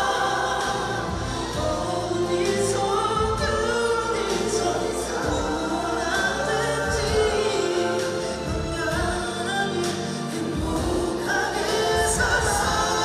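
A male singer singing a slow ballad into a handheld microphone over backing music, heard through concert loudspeakers.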